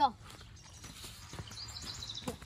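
Footsteps of a child walking on a dirt and stone garden path: a few light, irregular steps.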